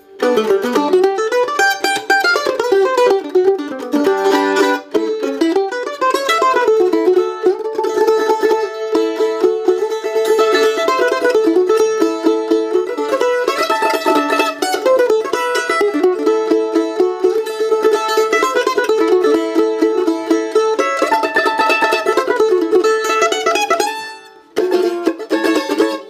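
Gibson F-9 F-style mandolin played with a flat pick: a fast picked melody of single notes and double stops. The playing breaks off briefly near the end, then a few more notes follow.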